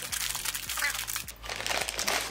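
Plastic bag crinkling as a small network firewall is slid out of it by hand, with a short lull about a second and a half in.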